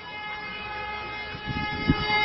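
A warning siren holding one steady pitch, with low thumps about a second and a half in.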